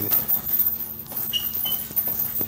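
Gloved punches landing on a hanging heavy bag, with the bag's chain jingling, and two short high squeaks a little past halfway.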